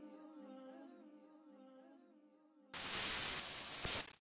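The song's last held, wavering notes fade out over the first two and a half seconds or so. Then a loud burst of TV-style static hiss cuts in suddenly as an outro sound effect.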